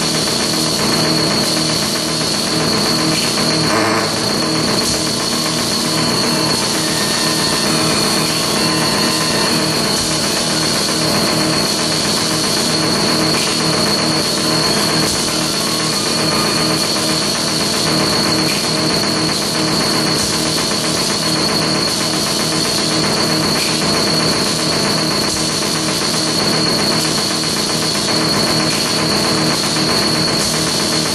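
Circuit-bent electronic hardware played live as harsh noise music: a loud, unbroken wall of electronic noise with a constant high-pitched whine on top and lower droning tones underneath.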